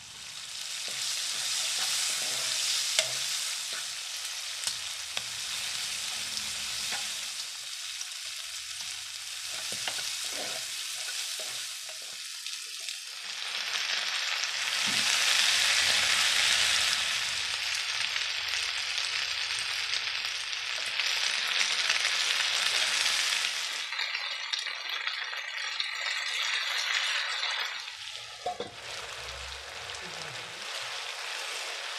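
Onion, green peas and cubed chayote roots frying in oil in a nonstick wok, sizzling steadily with the occasional scrape and knock of a spatula stirring. The sizzle swells louder about halfway through, when the cold chayote root pieces go into the hot oil, and dies down shortly before the end.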